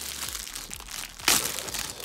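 Thin clear plastic bag crinkling as it is pulled off a trading-card pack, with one louder crackle about a second and a quarter in.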